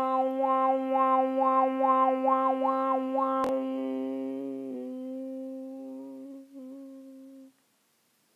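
A person's voice humming one long steady tone, its higher overtones shifting up and down in a repeating pattern over the held note, as in overtone toning. A single sharp click comes about three and a half seconds in, then the hum thins, fades and stops shortly before the end.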